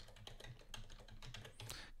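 Faint computer keyboard typing: a quick run of keystrokes, about five a second, as a word is typed.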